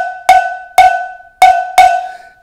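Hand-held standard cowbell struck on its edge with the shoulder of a drumstick: four strokes at an uneven pace, each pretty loud and ringing briefly at a clear pitch.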